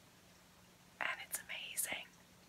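Quiet room tone for about a second, then a woman whispering a few words with soft hissing consonants.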